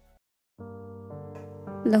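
About half a second of silence, then soft background music with sustained held chords. A voice speaks a word near the end.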